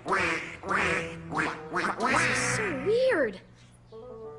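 Cartoon duck voices quacking over and over, about two to three quacks a second, over a children's-show song. Around three seconds in, one call swoops down and back up in pitch, and then the quacking stops.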